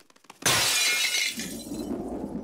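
Window glass shattering as a body crashes through the pane, a cartoon sound effect: a sudden crash about half a second in that fades away over about a second.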